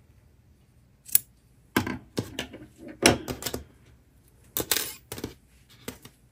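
Scissors snipping through the ends of a yarn tassel: a series of short, sharp cuts spread over several seconds as the tassel is trimmed even.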